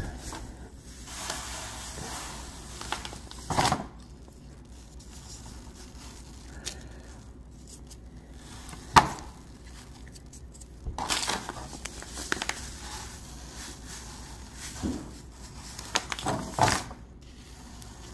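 Soft rustling and crinkling in several short stretches as a bag of silicon carbide grit is handled and the grit is worked onto wet J-B Weld epoxy on a pistol grip and pressed in by hand. A single sharp click comes about nine seconds in.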